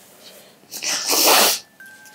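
A crying person's loud, wet sniff, a noisy breath lasting under a second that starts about three-quarters of a second in.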